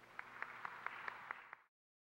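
Audience applauding, faint, with separate claps standing out over a light hiss. The sound cuts off suddenly near the end.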